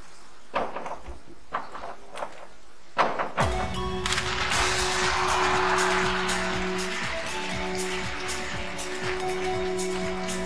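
Two diving springboards knocking as the divers run their approach and take off together, ending in a loud board thud about three seconds in. Crowd applause and cheering follow, with steady music playing underneath.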